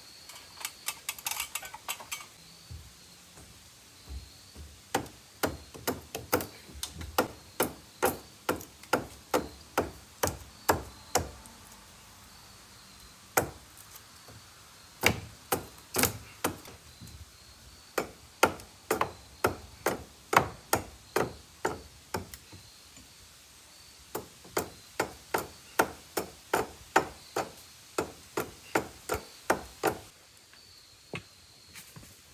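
Hammering: a hammer striking in runs of steady blows, about two to three a second, with short pauses between the runs.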